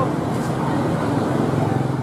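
Outdoor background noise: a steady murmur of people talking mixed with traffic.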